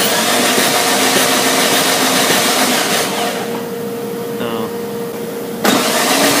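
Four-cylinder engine cranked over on its starter motor without firing, for about three seconds, then cranked again near the end. The fuel pump is unplugged, so the cranking is a spark and crank-signal test, not a start attempt.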